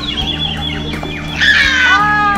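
Young children's high-pitched squeals and calls, loudest in a burst near the end, over music playing in the background.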